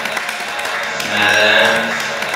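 Experimental sound-collage music made from chopped, repeated and heavily processed recordings of jingling keys, voice and body percussion: a dense bed of fine clicks and hiss. About halfway through, a louder, low pitched processed tone, likely vocal, is held for just under a second.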